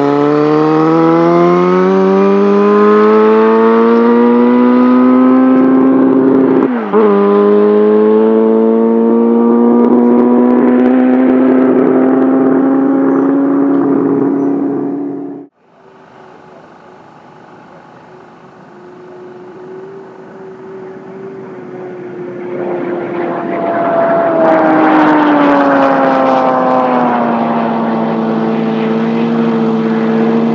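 A land-speed racing motorcycle accelerating hard, its engine pitch climbing through the gears with one brief shift about seven seconds in. The sound cuts off abruptly about halfway through. A quieter engine sound then builds, and its pitch drops as it grows louder.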